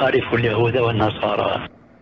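Speech only: a man talking on a muffled, narrow-band recording, stopping about one and a half seconds in and leaving a quiet pause.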